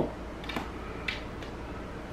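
Faint handling clicks of a bicycle tire and inner tube being worked onto the wheel's rim. Two short ticks come about half a second and a second in.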